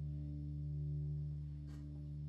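A chord on a hollow-body electric guitar, played through an amplifier, rings on as steady sustained notes and fades slightly near the end.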